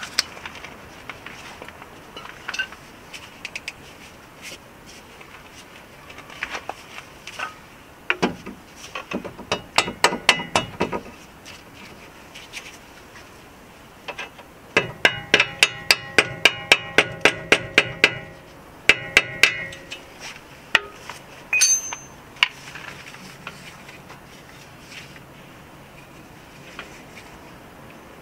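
Hammer blows on the steel control arm and ball joint, driving the new arm's ball joint stud up into the steering knuckle where it will not go in. The blows come as quick runs of taps: a short burst about nine seconds in, then a longer rapid run of ringing strikes, about five a second, followed by a few more.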